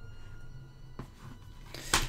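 A plastic Blu-ray case being handled and turned over in the hands over a low room hum. There is a light click about halfway and a louder, brief rustling noise near the end.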